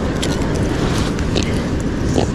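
Steady low rush of wind and surf at the shoreline, with a few faint ticks over it.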